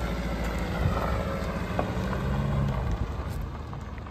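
Vauxhall Insignia estate driving away across gravel: steady engine hum with tyres rolling on the loose stones.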